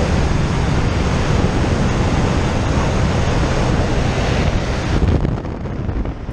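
Loud rushing wind buffeting the microphone at the open door of a skydiving plane in flight, with the aircraft's engine running underneath. The rush drops off sharply about five seconds in.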